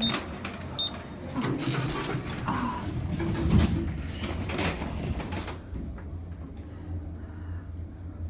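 Two short high beeps as a lift floor button is pressed, then a few seconds of clatter and faint voices, settling into a steady low hum as the glass lift travels.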